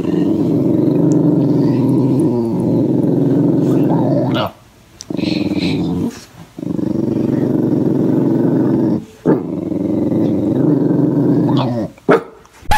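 Small short-haired dog growling in three long, rough growls, broken by short pauses about four and a half seconds in and again about nine seconds in.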